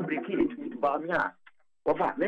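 A person talking over a telephone line, the voice thin and cut off above the phone band. It breaks off about one and a half seconds in, and talking starts again just before the end.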